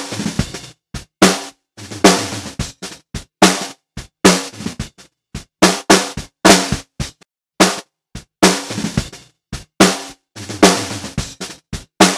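A recorded snare drum (bottom snare mic) played through a noise gate. A steady groove of louder and quieter hits passes through, and the gaps between them are chopped to dead silence as the gate shuts, cutting off the drum's ring and the bleed.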